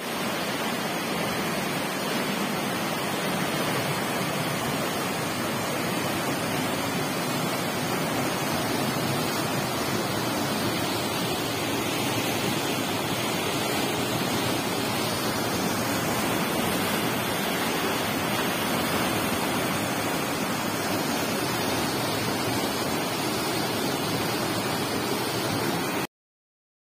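Steady rush of flowing water, an unbroken even hiss with no change in level.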